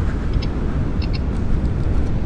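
Wind buffeting the microphone and a low road rumble as a NIU NQi GTS electric scooter rides at about 30 km/h. A faint double tick repeats about every 0.7 seconds.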